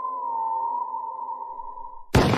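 A held, eerie electronic tone on one high pitch, like a theremin or sonar ping drawn out, with a slight dip in pitch around half a second in. It fades gradually near the end.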